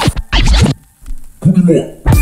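Edited-in DJ record-scratch sounds and a short voice snippet break up the background music, with a brief near-silent gap about a second in.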